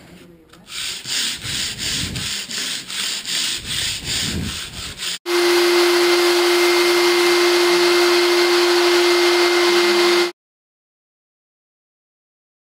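Hand sanding a hardwood floor edge with 80-grit sandpaper: back-and-forth strokes about two a second. About five seconds in this switches abruptly to a rotary floor buffer with a 320-grit maroon pad running with a steady hum, which cuts off suddenly a little after ten seconds.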